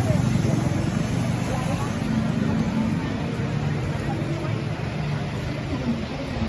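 Busy city street ambience: vehicle traffic running steadily, with voices of people talking nearby.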